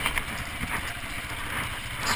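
KTM dirt bike engine running steadily at moderate throttle on a muddy trail.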